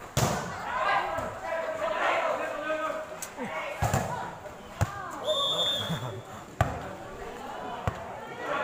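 Volleyball being hit during a rally: sharp slaps of hands on the ball at the start, about four and five seconds in, and twice more near the end. Players and spectators shout throughout, and a short high whistle sounds about five seconds in.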